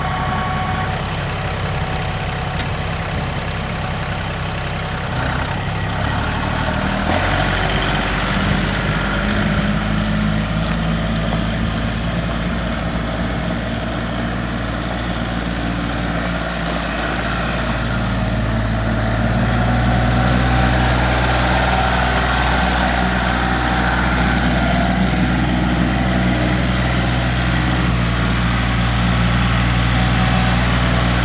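Kubota three-cylinder diesel engine of a compact loader tractor running steadily; its note changes about seven seconds in and it gets louder, at a higher engine speed, around eighteen seconds.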